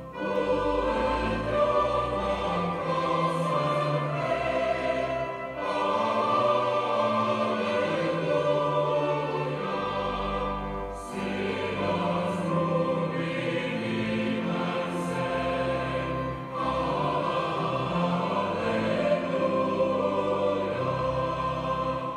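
A choir singing a hymn over a sustained bass accompaniment, in long phrases with short breaks about every five to six seconds.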